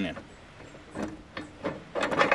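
A few faint, short metal knocks and scrapes as a tractor's three-point hitch lower lift arm is worked onto a back blade's mounting pin.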